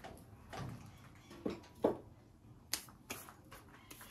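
Handling noises: about five sharp, light clicks and knocks as small objects are picked up and set down, the sharpest just before the two-second mark.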